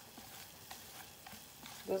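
Pot of water with sliced ginger and lemon boiling on the stove, bubbling quietly with scattered small pops.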